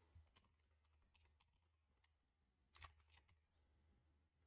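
Faint computer keyboard typing over near silence: a few scattered keystrokes, then a short quick cluster of keys nearly three seconds in.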